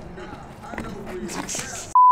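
A BMX bike rolling over a concrete rooftop, with a few light clicks and a short tyre hiss near the end, under faint chatter from onlookers.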